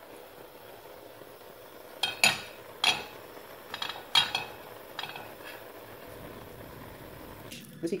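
Six or so sharp clinks and scrapes of kitchenware against a metal cooking pot as chopped onions are tipped in from a bowl, spread over a few seconds.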